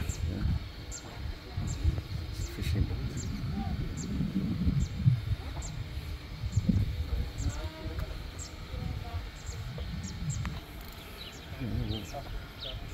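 Small birds chirping, short high falling notes repeated every second or so, over a steady low rumble, with faint distant voices in the middle.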